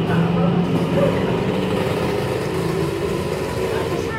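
A steady low mechanical hum, as from a running motor, with no sharp events.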